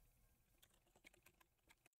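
Near silence: room tone with a few faint, scattered clicks from working a computer's mouse and keyboard.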